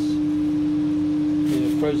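Steady machine hum: one clear, constant mid-pitched tone over a low rushing noise, unchanging throughout.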